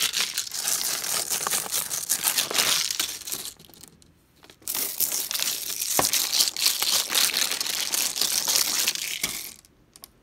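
Plastic water bottle filled with water and beads shaken hard in the hand: the thin plastic crinkles and the beads and water rattle and slosh inside. Two spells of shaking, with a brief pause about four seconds in.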